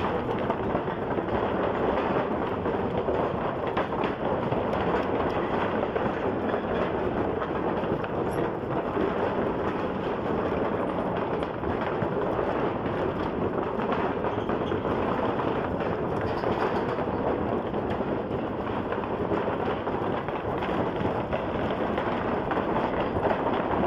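Motorcycle riding across a wooden-plank bridge: a steady, dense clatter of the planks knocking under the tyres, blended with the motorcycle's running noise.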